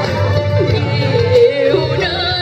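Hồ Quảng-style cải lương (Vietnamese opera) singing: a voice holding a long, wavering sung line over steady instrumental accompaniment.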